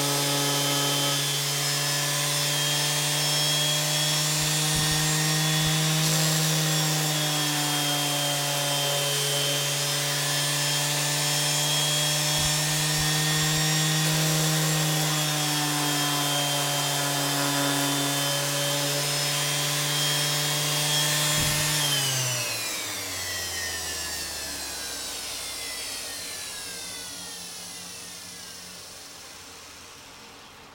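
Electric sander's motor running steadily, its pitch dipping slightly now and then. About 22 seconds in it is switched off and winds down with a long falling whine that fades away.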